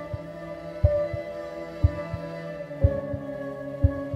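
Dark horror music: a sustained droning chord over a low, heartbeat-like double thump about once a second. The chord shifts to new notes about three seconds in.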